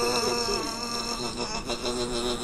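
A man holding one long, steady, buzzy 'aaah' through a wide-open mouth, his mouth burning from hot food.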